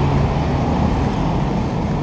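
Flatbed tow truck's engine running steadily with a low hum, powering the bed's hydraulics as the car is readied for unloading, with a single sharp click at the very end.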